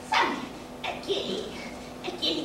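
A woman's loud wordless cry just after the start, falling in pitch, then a second, shorter outcry about a second in.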